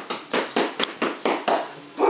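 A fast, even run of sharp taps or claps, about five a second, stopping near the end.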